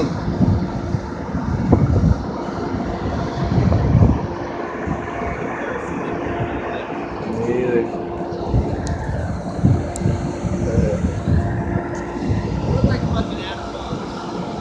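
A boat engine running with a steady hum while wind buffets the microphone in gusts as the boat moves.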